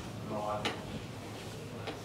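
Office chair creaking briefly as someone sits down, then a sharp click about two-thirds of a second in and a fainter click near the end.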